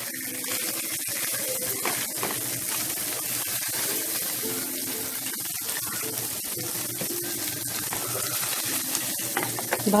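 Small Tatkeni fish frying in hot oil in a non-stick pan: a steady sizzle, with a spatula now and then nudging and turning the fish.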